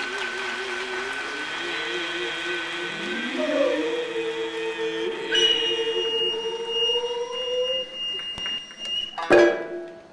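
Kiyomoto music for nihon buyō: singing voices hold long, wavering notes that slide between pitches, joined by a high steady held tone in the second half. The piece closes with one loud, sharp struck note near the end.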